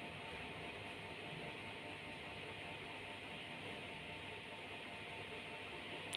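Steady faint hiss of room tone with a low hum, unchanging throughout, with no distinct sound events.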